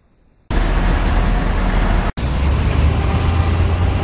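A loud, steady rumbling noise starts about half a second in and runs on, broken by a very short gap about two seconds in.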